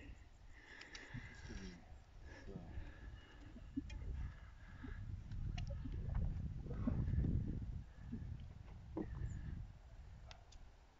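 Wind buffeting the microphone in an uneven low rumble that swells to its loudest about six to eight seconds in, with a few faint clicks from arrows and bow being handled.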